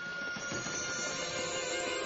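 Music score playing a sustained chord with a glittering high shimmer that swells about half a second in: a magic sparkle cue as pixie dust is sprinkled on the princess.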